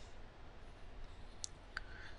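Two faint, short clicks of a stylus on a pen tablet about a second and a half in, over quiet room tone with a low hum.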